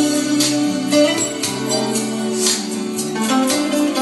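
Music played back through a pair of Patterson Audio Systems bookshelf loudspeakers with Vifa tweeters, picked up by a microphone in the room.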